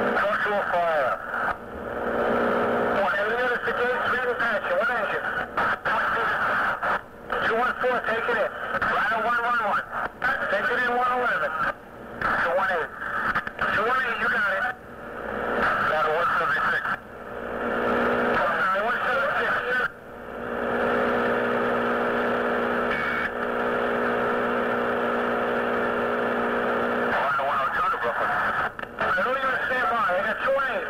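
Fire-department two-way radio traffic from a scanner tape: narrow-band, garbled voices with no clear words, broken by short squelch dropouts between transmissions. About two-thirds through, a steady buzzing hum of several held tones from an open carrier lasts several seconds before the voices return.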